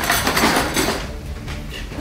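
Kitchen clatter of a frying pan and utensils being handled on a gas stove, loudest in the first second.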